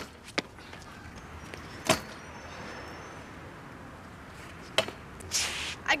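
Stunt scooter landing a trick on concrete: sharp clacks of the deck and wheels hitting the ground at the start and again about two seconds in, with a faint rolling sound in between and a couple of smaller knocks near the end.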